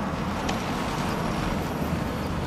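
A car driving slowly, set against a steady rumble of road traffic.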